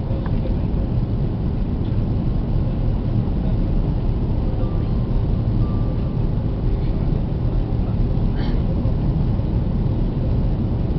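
Steady low cabin rumble of an Airbus A330-300 on approach, engine and airflow noise heard from inside the cabin at a window seat. A faint short tone sounds about midway.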